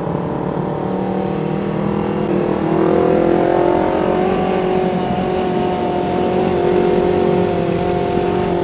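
Yamaha MT-25's 250 cc parallel-twin engine running while riding, its note climbing as the bike speeds up about two and a half seconds in, then holding steady at higher revs.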